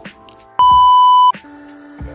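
A single loud, steady, high electronic beep lasting under a second, starting about half a second in, over soft background music.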